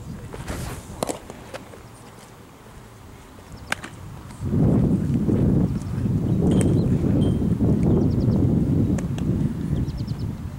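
A pitched baseball pops into a catcher's mitt about half a second in, with another sharp click a few seconds later. Then a loud low rumble fills the second half.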